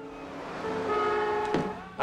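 A car horn blaring steadily over soft music, cut off by a sharp hit about one and a half seconds in.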